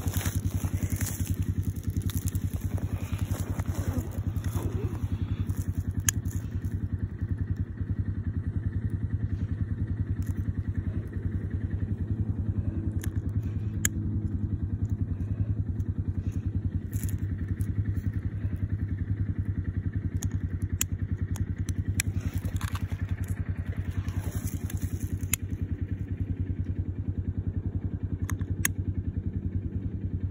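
An engine idling steadily: a low, even rumble with a fast regular pulse, with a few faint sharp clicks over it.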